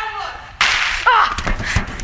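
A loud sudden crack about half a second in, a staged gunshot, with short cries around it and two low thuds as a performer playing the wounded drummer boy drops to the floor.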